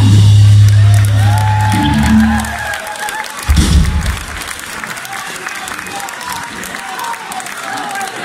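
A rock band's last chord ringing out over a held low bass note that stops about two to three seconds in, followed by a single low thump. Then the crowd cheers and applauds.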